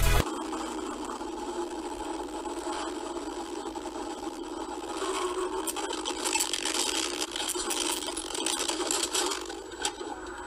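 Car driving, heard through a dash camera: steady road and cabin noise, thin in the bass, with rattling and scraping growing busier in the second half and a sharp click near the end.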